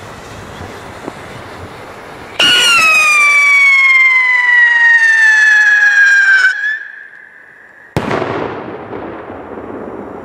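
Funke Scream Rocket 4 whistle rocket: a loud, shrill whistle starts suddenly and falls steadily in pitch for about four seconds, then stops. About eight seconds in comes a single sharp bang as the rocket bursts low after coming back down, being top-heavy.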